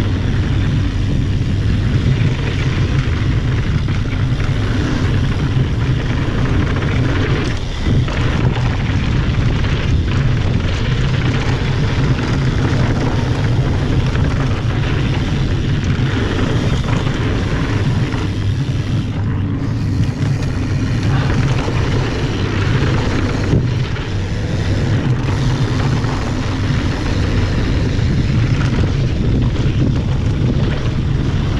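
Wind rushing over the microphone with the rumble of mountain bike tyres rolling fast on a dirt trail, steady and loud, with a few brief knocks from bumps.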